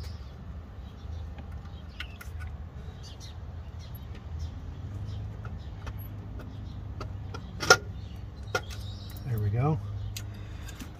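Small clicks and taps of a hand tool and cable fittings as wiring is disconnected from a van's alternator, with one sharp click near the end, over a low steady rumble.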